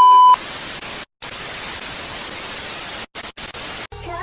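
TV test-pattern tone: a steady, loud 1 kHz beep that cuts off about a third of a second in, followed by television static hiss. The hiss drops out briefly a few times, once about a second in and several times near the end.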